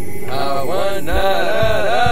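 Chanted singing in the Marubo indigenous style, its pitch rising and falling in repeated arcs, over the song's backing with a few low drum beats.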